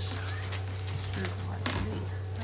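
Steady low electrical hum under faint background voices, with a couple of light taps or knocks.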